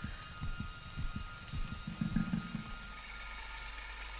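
A heartbeat, heard through the chest, beating quickly in a run of soft low thumps that fades out about two-thirds of the way in, leaving a low steady hum.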